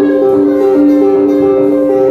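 Live instrumental music: a slow melody of held notes stepping in pitch, played on guitar.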